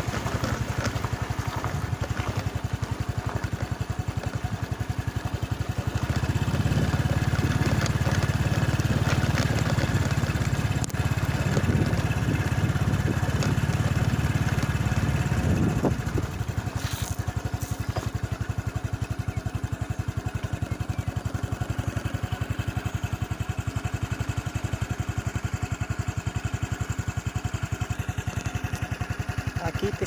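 A motorcycle engine running at low speed, louder and working harder from about six seconds in. It drops to a steady idle at about sixteen seconds.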